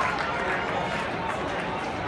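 Spectators in the stands chattering: a steady murmur of many voices with no single voice standing out.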